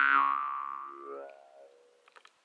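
Jaw harp tuned to C, a Szilágyi Black Fire, ringing out its last plucked note: the drone fades away over the two seconds while a bright overtone sweeps downward, dying to almost nothing by the end.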